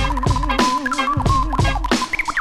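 Hip-hop beat with record scratching: short swooping scratched sounds cut over a looping, wavering sampled tone, deep bass drum hits and steady hi-hats.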